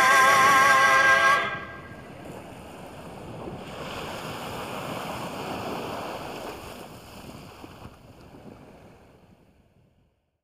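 The song's last held note, with a wavering vibrato, ends about a second and a half in. Then comes a rushing wash of sea water and wind that swells in the middle and fades out to silence near the end.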